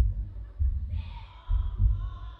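Heartbeat sound effect in the dance mix: deep lub-dub double thumps about once a second, with a faint high synth tone coming in about a second in.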